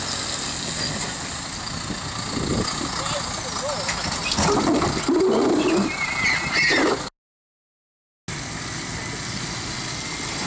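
John Deere tractor towing a trailer, its engine running steadily, with indistinct voices over it from about two seconds in. About seven seconds in, the sound cuts out completely for about a second, then the engine noise returns.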